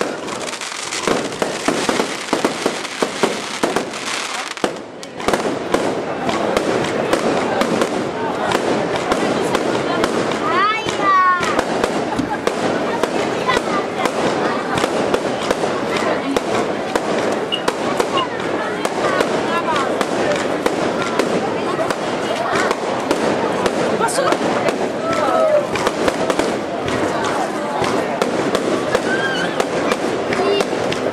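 Aerial fireworks bursting overhead in a string of bangs and crackles. A dense crackle fills the first four seconds or so, then repeated reports keep going through the rest.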